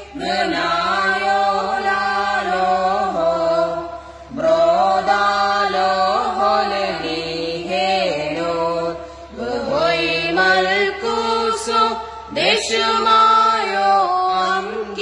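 A parish choir of boys and altar servers singing a kukkiliyon, a Syriac liturgical chant, together in melodic phrases. The phrases break briefly about four, nine and twelve seconds in.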